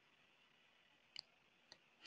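Near silence: faint room tone with a thin steady high hum, broken by two faint clicks about half a second apart, a little past a second in.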